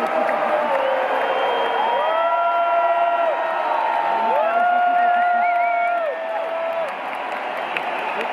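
Arena crowd cheering and calling out between songs. Two long drawn-out shouts, each held for a second or two, rise above the crowd noise in the middle.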